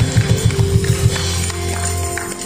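A live worship band playing between sung lines, with a quick, even pulse of bass and drums. About a second in, the pulse gives way to a held low bass note under a sustained keyboard tone.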